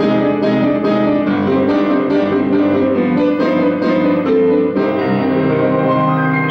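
Grand piano playing the introduction to a Russian romance, a steady run of struck chords and melody notes, before the voice comes in.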